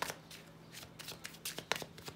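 Tarot cards being shuffled in the hand, a string of irregular soft clicks and flicks as the cards slip against each other.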